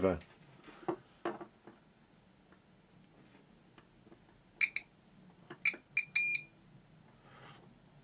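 Tenma 72-9385 multimeter's continuity beeper giving a few short, broken high-pitched beeps about halfway through, the last a little longer, as the test probes scrape a rusty screwdriver. There are faint clicks of the probe tips before the beeps. The beeps are choppy rather than a steady tone because the rust keeps the probes from making good contact.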